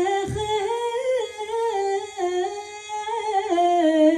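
A woman singing a long, unaccompanied, ornamented melody line that turns into a fast vibrato near the end. A single low hand-drum stroke sounds just after the start.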